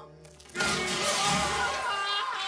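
Cartoon sound effect of a wooden crate smashing open about half a second in, followed by a loud, wavering yell over dramatic music.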